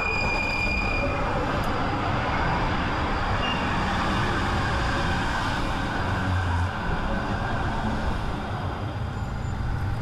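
Tram passing close by on a city street: steady rumble of its wheels on the rails and its running gear. A thin high tone at the start fades within the first second.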